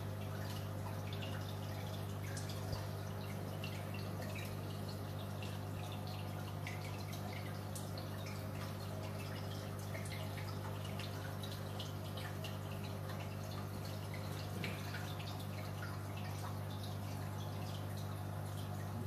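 Aquarium equipment running: a steady low electric hum under continual small drips and bubbling of water in the tank.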